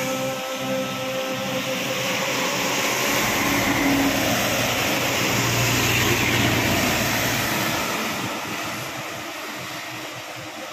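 Concrete mixer truck driving past on a wet road: its engine and tyre hiss grow louder to a peak around the middle, with a low steady hum, then fade as it moves away.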